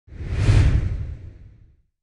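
A whoosh sound effect with a deep low rumble under it, swelling fast to a peak about half a second in and fading away before two seconds: a logo-reveal sting.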